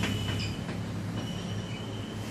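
Chalk writing on a blackboard: short scratches and taps of the chalk as a word is written, over a steady low hum.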